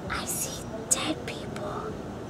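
A girl whispering the line "I see dead people": breathy, voiceless speech in a few short syllables lasting about a second and a half, with a sharp hiss on the "s".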